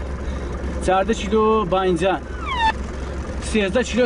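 A man's voice over the steady low hum of a vehicle engine, heard from inside the cab.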